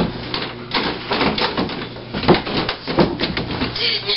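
Irregular taps, knocks and rustling as people move about a small room, with a few faint vocal sounds mixed in.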